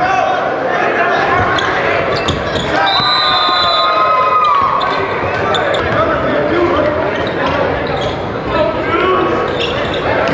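A basketball bouncing on a gym floor during play, over a steady din of crowd voices and shouts echoing in a large hall.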